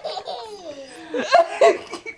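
A toddler laughing hard in gliding, breathless bursts, louder in the second half.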